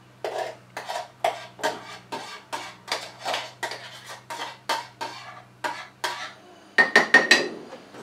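Black milk-frother jug clinking against a ceramic mug as frothy milk is poured and tapped out: a steady run of light clinks, about three a second, then a quick cluster of sharper, ringing clinks near the end.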